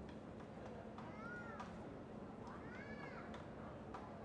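Two faint high squeals of court shoes on the badminton court mat, each rising and then falling in pitch, about a second and a half apart, with a few faint clicks between them.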